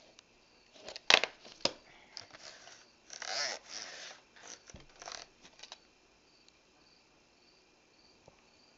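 VHS tapes and their sleeves being handled: a sharp click about a second in, a few lighter clicks, a rustle of sleeve or case around three to four seconds, more small clicks after, then little sound.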